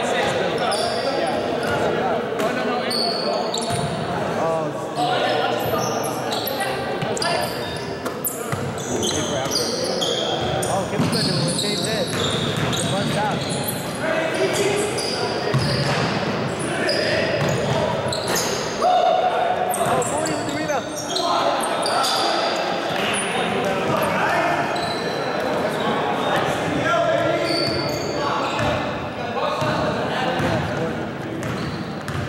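Indoor basketball game in a large, echoing gym: the ball bouncing on the hardwood court, many short high sneaker squeaks, and players calling out indistinctly.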